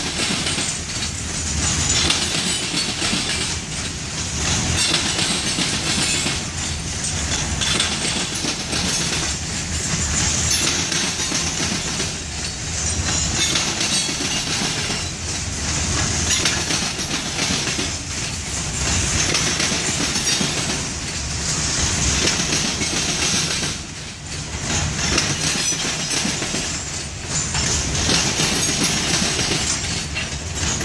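Covered hopper cars of a freight train rolling past, with a steady rumble and hiss of steel wheels on the rails. The sound swells and eases every couple of seconds as the cars go by.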